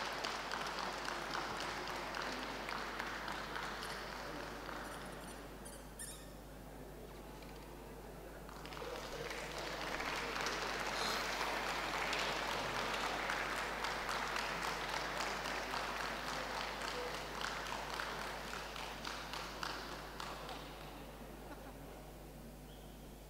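Audience applauding: the clapping dies down about six seconds in, swells again a few seconds later and tails off near the end.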